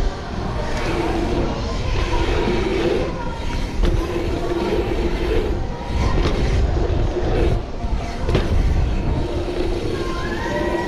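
A mountain bike ridden over dirt rollers and jumps, heard from a camera on the bike or rider. Wind rumbles on the microphone over the tyres on packed dirt, with a few sharp knocks from bumps and landings. A humming buzz comes and goes, typical of a rear hub freewheeling while the rider coasts.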